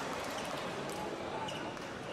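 Spectators murmuring in a large hall, with a few light, irregular clicks of a table tennis ball bouncing between points.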